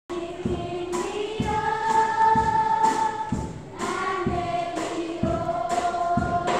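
Choir singing a gospel song, several voices holding notes together over a steady beat of about two strokes a second.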